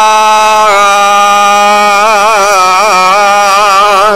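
A man's voice chanting one long held note in a melodic sermon style, the pitch wavering in small ornamental turns, loud and amplified through microphones. It breaks off right at the end.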